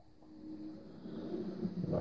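Audio of a video's intro starting to play through the TV's speakers: a steady low tone comes in about a quarter second in and swells steadily louder.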